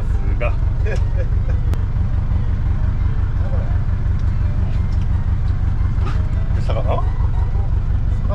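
Fishing boat's engine running steadily: a constant low drone.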